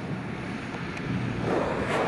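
Massey Ferguson tractor pulling a silage trailer across a field, engine and running gear growing louder in the second half as it comes closer.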